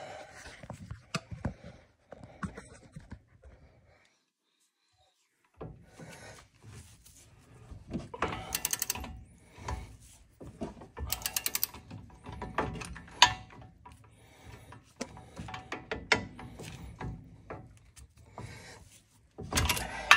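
Socket ratchet on a long extension working the brake caliper bolts loose: quick runs of ratchet clicking as the handle swings back, mixed with clinks and knocks of the tool against the caliper. A short dead silence breaks it about four seconds in.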